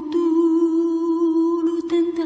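Background music holding one long, steady note.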